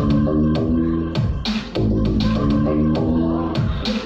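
Electronic music loop played back from Ableton Live: a low synth bass line under a steady beat of drum hits.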